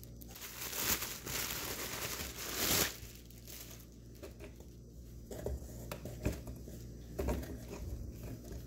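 Plastic packaging crinkling and rustling as it is handled, steady for about the first three seconds, then quieter handling with a few light knocks and rustles.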